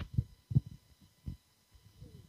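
Low, irregular thumps and rumbles of handling noise on a hand-held camera's microphone, four or five short knocks spread over the two seconds.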